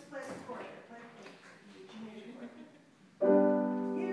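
Faint talk, then about three seconds in a grand piano chord struck loudly and left ringing.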